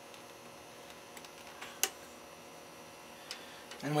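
Quiet room hiss with a few faint clicks and one sharper click a little before two seconds in, from hands handling a bench power supply's test lead and clip at the laptop's battery terminals.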